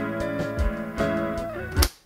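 A four-track cassette recording played back on a Tascam 414 mk2 Portastudio: a drum track under layered rhythm and lead guitars. The music stops abruptly just before the end, right after a final hit.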